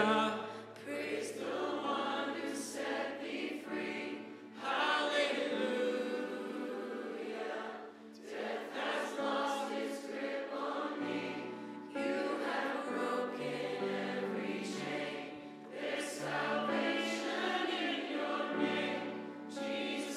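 Live worship band and congregation singing a contemporary worship song together, many voices over acoustic guitar, keyboard and bass, in phrases of about four seconds with short breaks between.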